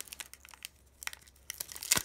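Foil-lined booster pack wrapper crinkling and crackling in the hands as it is pulled at to tear it open, a struggle to get it started. The crackles are sparse at first and thicken into a denser burst of crinkling near the end.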